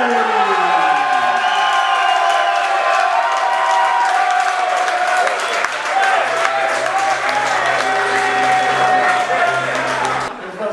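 Crowd cheering and applauding, with music playing; a low bass line comes in about six seconds in.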